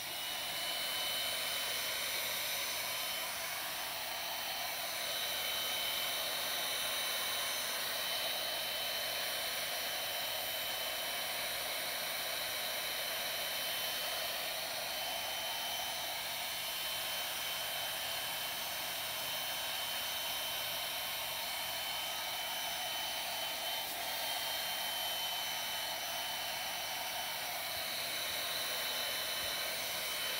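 Handheld craft heat gun running, a steady rush of blown air with a thin high whine, drying wet paint and glue on a collaged brown paper bag. It comes on right at the start.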